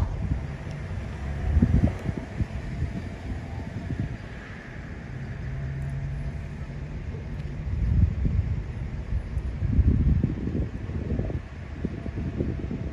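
Wind buffeting a handheld microphone outdoors in deep rumbling gusts, strongest about a second and a half in and again near eight and ten seconds. There is a short steady low hum near the middle.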